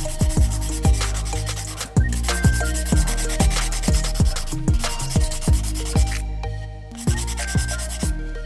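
A hand nail file rubbing back and forth across a gel-polished nail, filing down through layers of gel polish to bring up the colours underneath. Background music with a steady bass beat plays throughout and is the louder sound.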